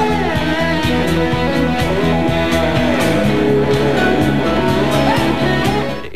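Guitar-led band music: the guitar's notes glide up and down in slides over a steady bass line.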